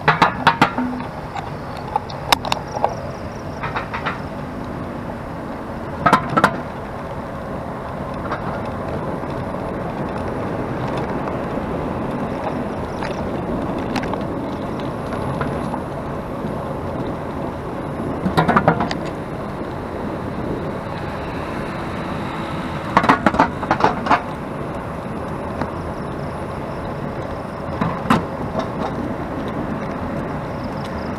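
Steady road traffic noise from cars passing at a road junction, broken every few seconds by short clusters of sharp clicks and knocks.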